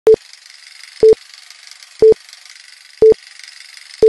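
Film countdown leader sound effect: a short beep once a second, four beeps in all, with a steady crackling hiss like an old film projector running underneath.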